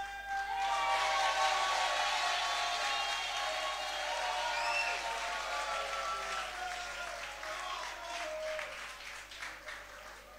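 Audience applauding, swelling about a second in and then slowly dying away.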